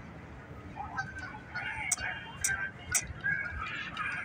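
Short bird calls and chirps over outdoor background noise, with faint voices in the distance.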